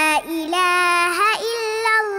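A child singing an Arabic nasheed (Islamic devotional song), holding long notes that slide in pitch, with short breaks between phrases.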